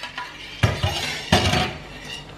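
Two short clatters of kitchen utensils against cookware, a little under a second apart.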